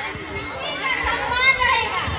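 Children's voices: a child's high, raised voice calls out over the murmur of a large crowd of children.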